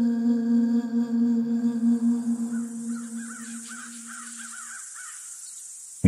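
A crow cawing in a quick run of calls through the middle, over a low, steady musical drone that fades away, with a faint hiss underneath.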